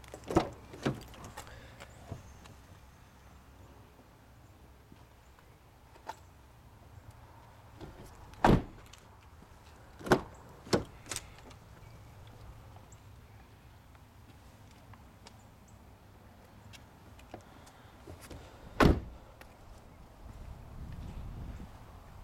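A 2011 Nissan Leaf's front door being worked: handle and latch clicks as it opens, a few scattered knocks and clicks, then a solid thunk near the end as the door is shut.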